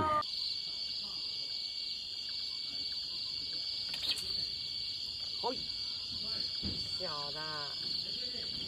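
A steady, high-pitched chorus of night insects, a continuous shrill trill that does not let up. A brief faint pitched call sounds near the end.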